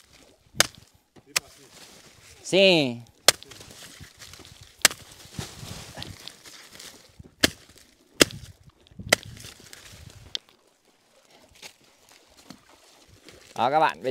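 A machete chopping banana trunks into pieces: about eight sharp single blows at irregular intervals. A short shout comes between the second and third blows.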